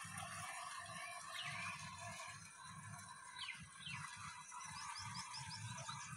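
Small birds chirping faintly: a few scattered short calls, then a quick run of about six high chirps near the end, over a low uneven rumble.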